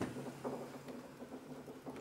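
Marker pen writing on a whiteboard: a faint, continuous scratchy rubbing.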